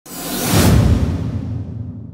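Logo-reveal whoosh sound effect over a deep rumble. It swells to a peak about half a second to a second in, then fades, the hiss dying away first.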